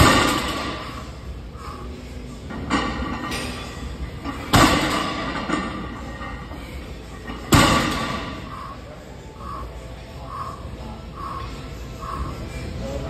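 Loaded barbell set back down on rubber gym flooring between deadlift reps: heavy thuds, each ringing briefly. The three loudest come at the start, about four and a half seconds in and about seven and a half seconds in, with a lighter knock between the first two.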